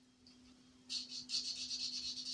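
A pen scratching on a card in quick back-and-forth strokes as it colours in small shapes, starting about a second in, over a faint steady low hum.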